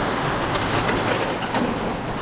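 Steady outdoor ambient noise, an even rushing hiss, with a bird calling.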